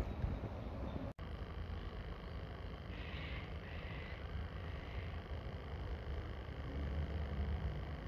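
Low, steady outdoor background rumble, cut off briefly about a second in, with faint high chirps a few seconds in.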